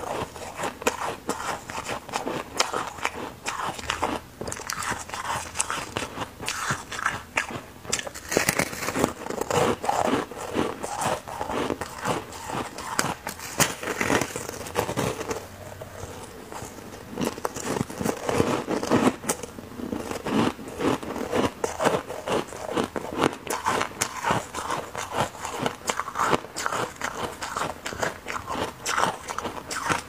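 Foam ice being bitten and chewed right at a clip-on microphone, giving a continuous run of crisp crunches and fine crackles.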